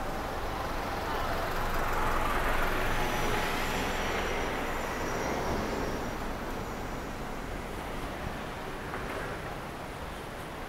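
A truck driving past at low speed, its engine and tyre noise swelling over the first few seconds and then slowly fading as it moves off ahead.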